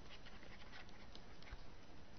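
Faint, steady hiss of the lecture microphone, with a few light ticks scattered through it.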